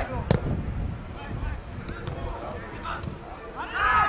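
Sound of a football pitch during play: faint shouts from players and spectators over a low rumble, with one sharp knock about a third of a second in and a louder shout near the end.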